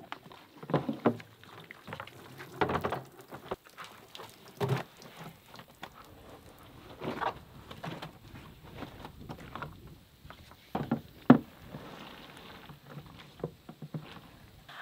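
Wet laundry being handled in a Lavario portable clothes washer's plastic bucket and basket: irregular wet slaps, rustles and plastic knocks as the soaked clothes go into the bucket and the basket is pressed down on them to squeeze out water. One sharp knock near the end is the loudest.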